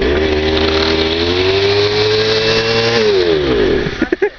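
Backpack brush cutter's small petrol engine catching on a pull of the starter cord and running for about three seconds, its pitch creeping up. It then winds down with a falling pitch and stops.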